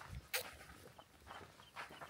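Faint sips through a hydration pack's drinking tube, with one short, sharper slurp a third of a second in.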